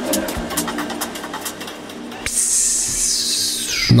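Electronic drum and bass outro: the heavy bass drops away, leaving a few sparse held tones, then a hissing noise sweep falls steadily in pitch over the second half.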